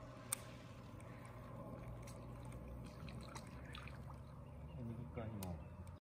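Baitcasting rod and reel being handled during a cast: one sharp click about a third of a second in, then faint scattered ticks over a low steady hum. A brief voice near the end.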